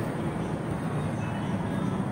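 Steady background noise, an even hiss and rumble with no distinct events.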